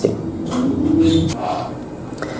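A dove cooing: one low, steady coo held for about a second, starting about half a second in.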